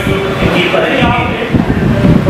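Indistinct talk from people in a meeting hall, picked up as room sound over a heavy, steady low rumble.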